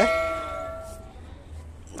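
A struck metal object ringing out with a bell-like metallic tone, fading away over about a second.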